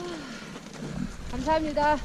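A person's voice: a short falling call at the start, then two brief pitched syllables in the second second.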